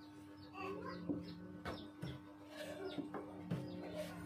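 Rigid acrylic plastic pieces being handled and set down on the bar of an acrylic bending machine: a few light knocks and clatters, with a steady low hum underneath.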